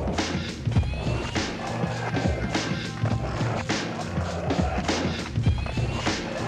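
Backing music with a steady drum beat over deep bass.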